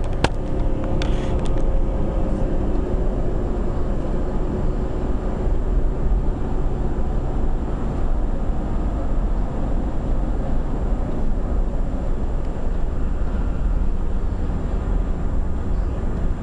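Steady road and engine rumble heard from inside the cabin of a moving car, with a few sharp handling knocks on the camera in the first second or two.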